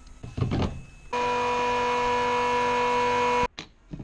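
A brief knock, then an electric fuel-dispensing pump humming steadily for about two and a half seconds, switching on and cutting off abruptly.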